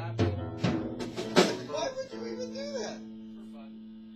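A rock band's instruments played loosely rather than as a song: a low bass note fades out, a few drum-kit hits land over the first second and a half with the loudest near the middle, then a single held note rings on steadily.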